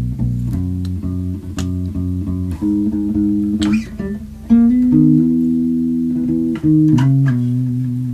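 Electric bass guitar played solo: a lick in the key of B, a run of quick plucked notes, then chords of several notes let ring together, ending on two held chords.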